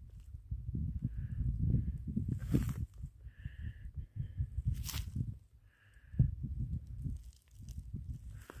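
Uneven low rumble of wind and handling noise on a handheld camera's microphone, with a couple of sharp clicks and a few faint, short chirps in the background.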